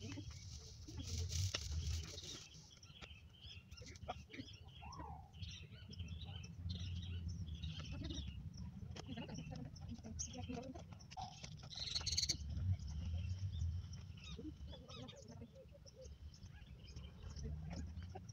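Birds chirping intermittently in the surrounding trees, many short high calls scattered through, over a low, uneven rumble.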